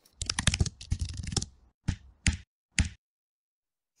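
Computer keyboard typing: a quick run of keystrokes, then three single key presses about half a second apart.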